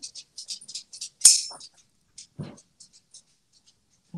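Faint scratchy rustling and light clicks from a video call during a lull, with one sharper click about a second in and a brief soft sound a little later.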